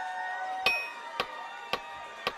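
A drummer's count-in: three sharp, evenly spaced ticks with a short metallic ring, about two a second, starting about two-thirds of a second in. Before them, a sustained chord from the band's instruments dies away.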